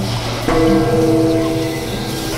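A bell-like chime sound effect struck once about half a second in, several tones ringing on and slowly fading, over background music.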